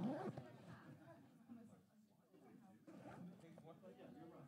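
Faint, indistinct conversation of several people talking at once in small groups around a meeting room, no one voice clear.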